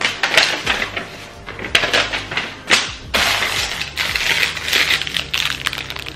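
Plastic packaging crinkling and rustling as it is handled, with small hard clicks and clinks from the bagged adhesive hooks and screws and the wire shelf parts.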